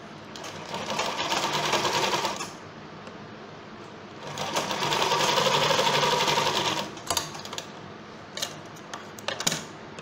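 Sewing machine stitching in two runs of about two seconds each, with a pause between. A few short clicks follow near the end.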